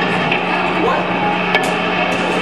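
Electric band gear idling on stage between songs: a steady low amplifier hum under a noisy room, with a sharp knock about one and a half seconds in and a short shout of "What?"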